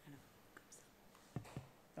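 Near silence with a couple of short clicks about one and a half seconds in: the buttons of a handheld presentation remote being pressed to change the slide.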